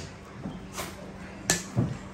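Kitchen handling noise: a single sharp knock about one and a half seconds in, over a faint low steady hum.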